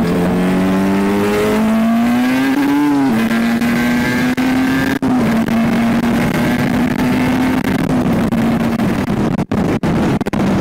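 Two-stroke sport motorcycle engine heard from the rider's seat. It revs up for about three seconds, drops sharply at an upshift, then holds a steady high-revving note as the bike pulls away. Wind noise runs underneath.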